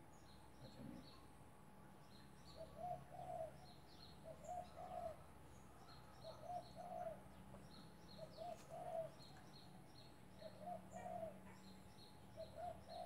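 Faint dove cooing: soft two-note coos repeating every second or two, starting a couple of seconds in. Thin, quick chirps from a small bird repeat higher up throughout.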